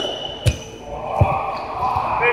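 Indoor floorball play in a large gym: a sharp crack about half a second in and a duller thud a little after a second, from sticks, the plastic ball and feet on the court. Players' voices ring in the hall.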